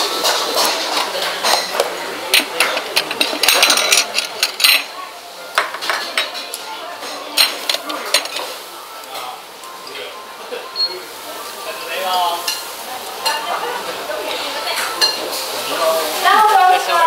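Chopsticks clicking and tapping on ceramic plates, with dishes being handled and clinking. The clicks come thickly in the first few seconds, then thin out.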